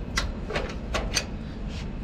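Hand tools clicking and knocking on metal as the igniter plug is worked loose with a wrench and adapter: a handful of light, irregular clicks.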